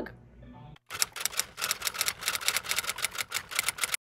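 Typing sound effect: a rapid, even run of keystroke clicks, about eight a second, starting about a second in as the text types out across a title card.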